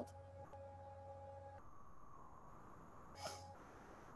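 Near silence: room tone with a faint steady electrical hum, and one brief soft noise about three seconds in.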